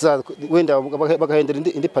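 A man speaking steadily in an interview: only speech.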